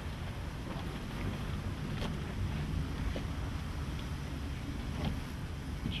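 Steady low rumble of wind on the microphone, with a few faint clicks, one about two seconds in.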